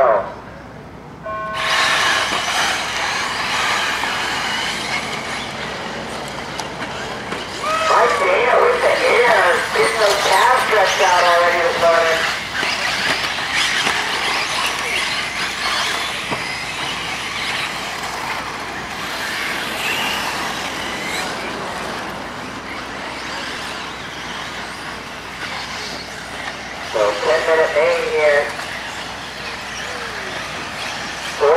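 Electric 1/8-scale RC buggies racing on a dirt track, a steady dense wash of motor and tyre noise starting about a second and a half in. A man's voice, likely the announcer, cuts in twice, once around eight seconds and again near the end.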